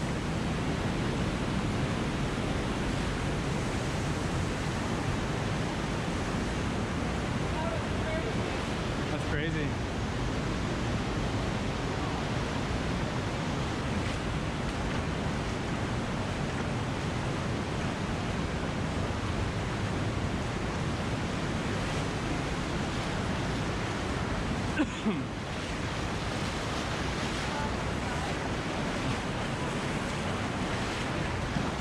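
Steady rush of a fast-flowing river current through a narrow rock canyon, with one brief knock late on.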